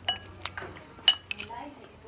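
Metal cutlery clinking against plates, a handful of sharp, short clinks with a brief ring, the loudest a little after a second in.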